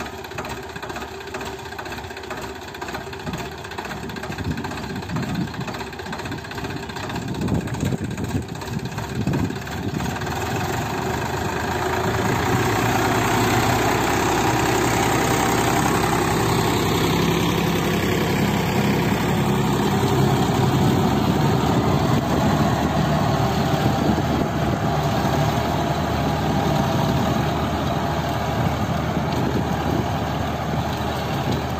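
Sonalika 50-horsepower tractor's diesel engine running steadily under load as it drives a seven-foot double-blade rotavator through the soil. It grows louder over the first dozen seconds, then holds steady.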